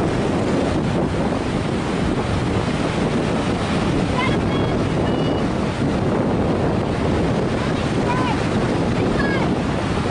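Ocean surf breaking along a beach, with wind buffeting the microphone: a steady, even rush of noise throughout.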